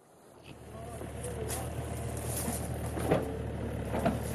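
Excavator engine running at a steady idle, a low hum that fades in over the first second.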